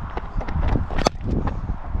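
Wind rumbling on a body-worn camera's microphone, with scattered light knocks and one sharp crack about a second in: a cricket bat striking the ball.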